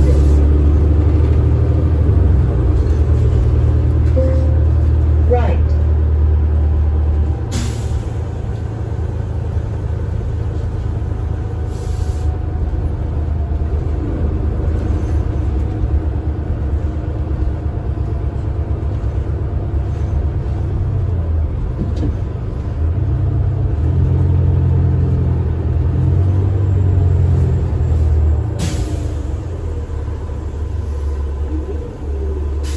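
Diesel transit bus heard from inside while under way: its Cummins ISL9 engine runs with a strong low note that eases off about seven seconds in and builds again from about 23 to 28 seconds. Short hisses of released air come about seven seconds in, again at about twelve seconds, and near the end.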